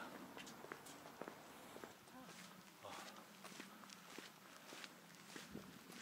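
Faint footsteps of a person walking, a scatter of soft steps and scuffs.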